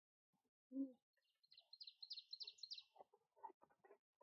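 A songbird singing one short song of about seven quick, repeated high notes, followed by a few footsteps on a dirt trail near the end.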